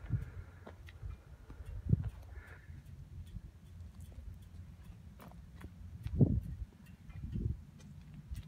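Footsteps on a paved driveway: a few irregular scuffs and thumps over a steady low rumble, the strongest about two seconds in and again about six seconds in.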